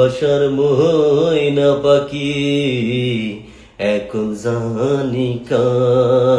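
A man's voice holding long, drawn-out, wavering notes in a chant-like way, in three phrases with short breaks a little before four seconds and at about five and a half seconds in.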